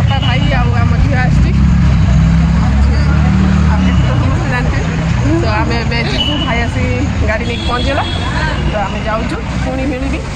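A woman talking over the low rumble of vehicles at a roadside; the rumble is heaviest in the first few seconds, then eases.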